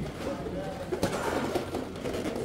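A bird calling over a faint murmur of people, with a small click about a second in.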